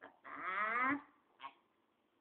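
A baby's whiny vocal sound: one drawn-out call just under a second long, wavering and rising in pitch, followed by a short faint sound about a second and a half in.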